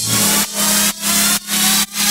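Electro house track in a build-up. A buzzing synth pumps in rhythm, ducking about twice a second, with a rising sweep over it and the bass dropped out.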